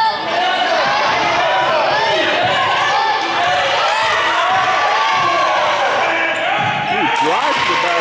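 Basketball being dribbled on a hardwood gym court, amid many overlapping voices of players and spectators calling out.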